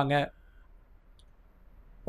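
A man speaking Tamil finishes a word at the very start, then a pause of near silence (room tone) with one faint small click about a second in.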